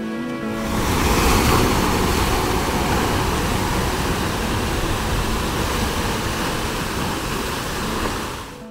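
Ocean surf: a steady, loud rush of waves that swells up about half a second in, with guitar music fading under it.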